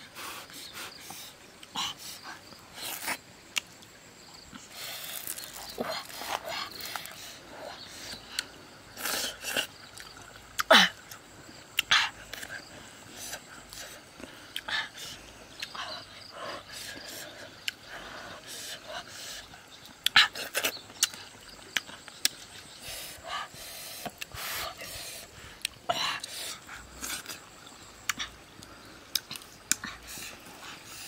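Close-up eating sounds of a person eating grilled fish with his fingers: irregular wet chewing, lip-smacking and mouth clicks. A single brief falling sound comes about eleven seconds in.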